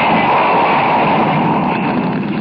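Radio-drama sound effect of a house fire: a steady rushing noise of flames, with no clear pitch.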